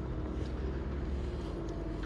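Steady low outdoor rumble with a faint steady hum above it.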